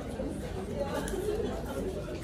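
Indistinct chatter of several people talking at once in a room, with no one voice standing out.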